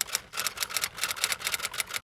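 Typewriter sound effect: a quick, uneven run of key clicks.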